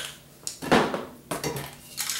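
Metal Ironlak spray paint cans knocking and clinking against each other as they are handled and stood among the other cans: a few short knocks, the loudest under a second in.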